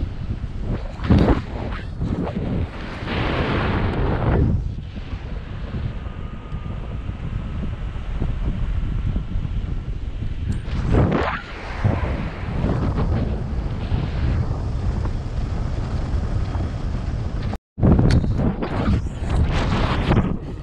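Wind rushing over the camera microphone of a pilot in flight: a steady low buffeting that swells in gusts, loudest around four seconds in and again around eleven seconds. Near the end the sound cuts out completely for a split second, then the buffeting comes back louder.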